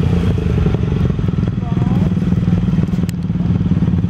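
Racing quad bike's engine running steadily as it drives through the mud, with a single sharp click about three seconds in.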